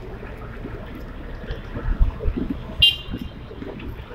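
Steady road and motor rumble heard from inside a small open passenger cart on the move, with scattered knocks and rattles. A short, high-pitched toot sounds just before three seconds in.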